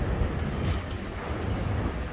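City street ambience: a steady low rumble of traffic and machinery, with a few faint clicks.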